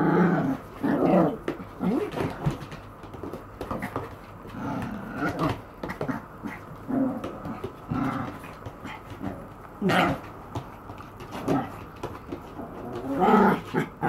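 Maltese dog play-growling in short repeated bursts while tussling with a person's hand. A sharp click comes about ten seconds in.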